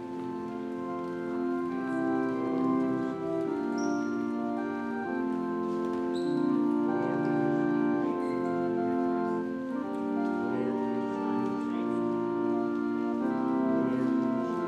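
Church organ playing a hymn in sustained chords, one chord change about every second.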